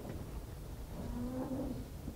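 A man's faint drawn-out hesitation sound, a held "mmm" or "uhh", about a second in, over low rumble from a handheld microphone being carried and handled.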